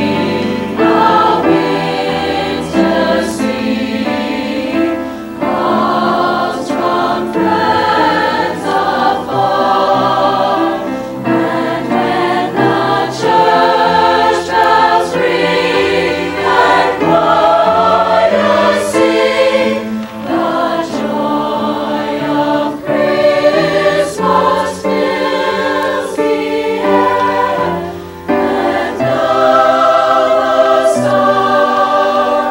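Mixed high school concert choir, girls' and boys' voices, singing in harmony with held chords that shift from note to note.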